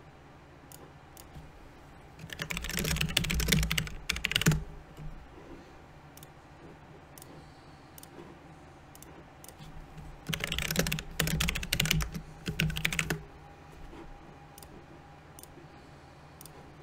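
Computer keyboard typing in two quick bursts of about two to three seconds each, with scattered single clicks in between.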